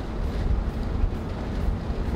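Steady low road and engine rumble of a moving car, heard inside the cabin.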